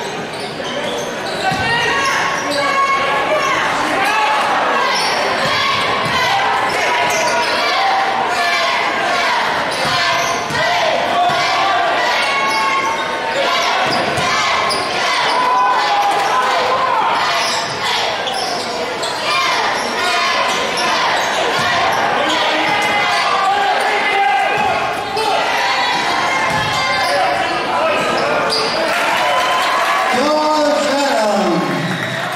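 Basketball bouncing on a hardwood gym floor during play, with many short impacts over a steady mix of voices from players and spectators, echoing in a large gym.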